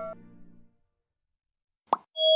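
Ringing tones from a subscribe-button animation jingle cut off and fade away within the first half second. Then silence, broken by a short pop just before the end.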